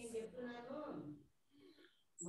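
A faint voice for about the first second, then near silence.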